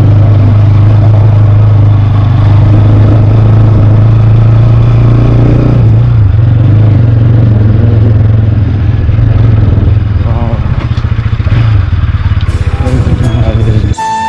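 Motorcycle engine running at a steady pitch while being ridden, heard from the rider's position, with a brief dip about six seconds in. Near the end it eases off and a few sharp ticks come in.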